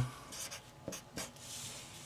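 Red Sharpie felt-tip marker writing on paper: several short strokes, then a longer one about one and a half seconds in.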